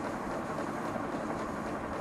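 Steady background noise with no speech: an even rumble and hiss in a short pause between a preacher's sentences.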